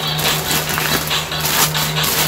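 Plastic courier mailer bag crinkling and rustling as it is handled and unwrapped, over a steady low hum.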